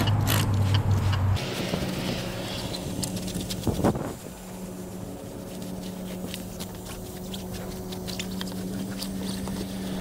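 A cloth rag rubbing and scuffing over a steel spare wheel and tyre, with a louder knock about four seconds in. A steady hum runs underneath.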